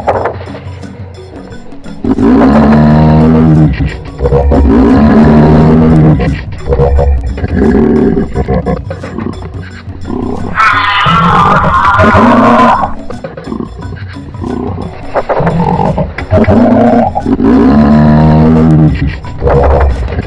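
A large animal giving a series of loud, deep, roaring calls, each a second or two long, with one higher-pitched call about halfway through.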